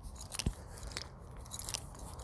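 Soft mouth clicks and crackles from a reader close to the microphone in a pause between spoken phrases, with one low thump about half a second in.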